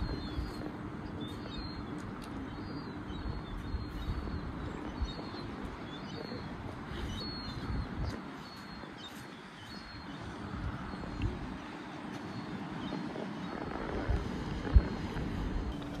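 Quiet outdoor ambience: a low rumble of wind on the microphone, with faint, short, high bird chirps now and then.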